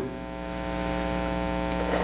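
Steady electrical mains hum with a stack of buzzing overtones, carried by the church sound system's recording feed. It grows slightly louder across the pause.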